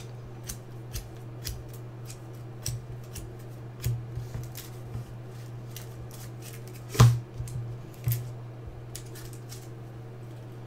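Trading cards in plastic sleeves and hard toploaders being handled and sorted on a table: a run of light clicks and rustles, with a sharper click about seven seconds in and another a second later, over a steady low hum.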